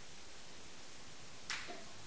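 A single sharp click about one and a half seconds in, from a small tool handled against the hydraulic shift lever, over faint steady hiss.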